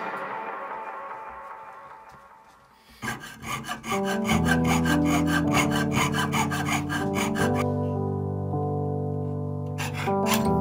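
Jeweller's saw cutting a sterling silver strip, quick rhythmic rasping strokes that start about three seconds in and stop after about four and a half seconds, with background music starting just after.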